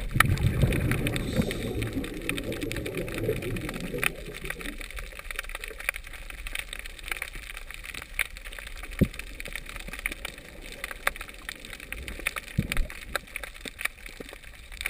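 Scuba diver's exhaled bubbles from the regulator, a low bubbling rumble heard underwater through the camera housing, fading out about four to five seconds in. After that, scattered sharp clicks and crackles continue quietly.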